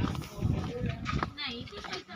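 Indistinct voices outdoors, with a few short knocks.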